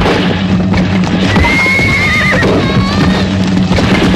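Horses ridden through undergrowth, hooves pounding, while a horse whinnies about a second in with a long, level cry that breaks into a wavering end.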